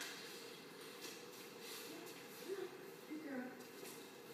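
A woman's voice speaking briefly and softly, too faint for words to carry, with a few light rustles.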